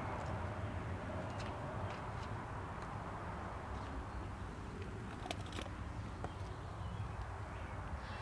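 Quiet outdoor ambience: a steady low rumble with a faint even hiss, and a few faint clicks about five seconds in.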